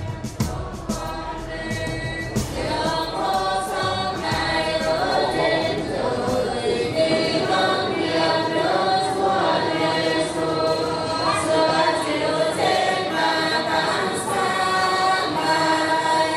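Church choir singing a Vietnamese Catholic hymn in several voices, holding long notes, with a few short knocks just at the start.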